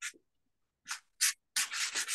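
Pastel stick scraping across textured paper in short separate strokes, then a quicker run of back-and-forth strokes near the end.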